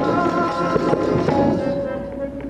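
Sikh kirtan accompaniment: a harmonium holding steady notes over a thick run of tabla strokes, on a crackly, distorted recording.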